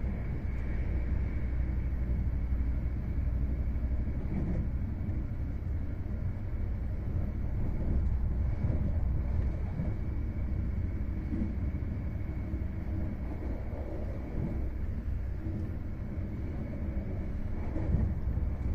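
Steady low rumble of an InterCity passenger coach running along the line, heard from inside the coach: wheels on rails and the running gear, with no breaks or sudden knocks.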